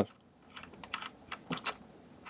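A few faint, irregular clicks and taps, spaced unevenly, with no speech.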